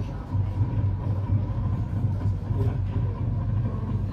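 Marching band playing in a stadium, heard from the stands as a low rumble of bass drums and low brass with little melody above it.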